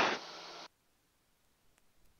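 Almost silent: the end of a spoken word, then about half a second of faint, even hiss from the headset intercom feed, which cuts off suddenly into dead silence.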